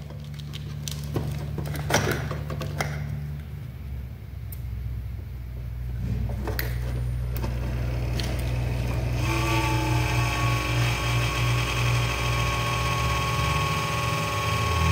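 Steady low hum of a running computer power supply, with a few light clicks in the first half. About nine seconds in, a louder, higher whine made of several steady tones joins it.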